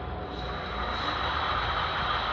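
Brushless hub motor in an electric bicycle's rear wheel running, with a steady hum and a faint high whine. It is driven from a single 12 V battery, stepped up to about 55–60 V, which turns out to be enough to turn the wheel.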